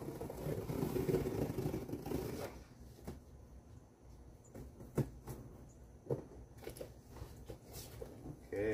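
Tape on a large cardboard TV box being cut open with a hand tool, a scraping, rustling sound for about two and a half seconds. After that comes quieter cardboard handling with a few sharp clicks, the loudest about five seconds in.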